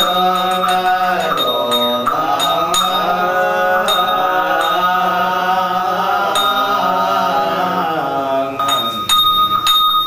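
Buddhist monks chanting a sutra in long, drawn-out sustained tones, punctuated by sharp percussive strikes now and then that come more thickly near the end.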